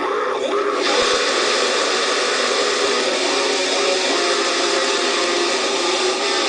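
Heavily distorted Firebird-style electric guitar playing a dense, noisy metal passage, a wash of sound with few clearly separate notes.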